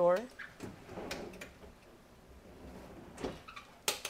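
Faint shuffling, then a few light knocks and one sharp click near the end from wooden hotel-room closet fittings being handled.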